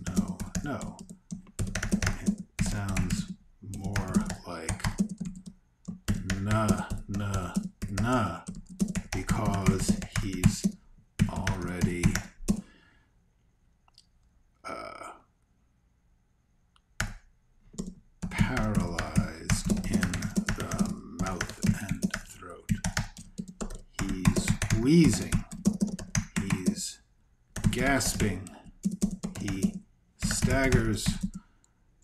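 Typing on a computer keyboard in quick bursts of key clicks, with a pause of a few seconds a little before halfway.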